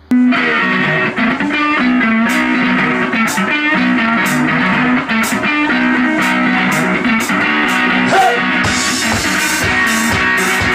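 Live blues-rock band playing, starting abruptly with a plucked guitar riff over drum and cymbal strokes; the cymbals grow denser near the end.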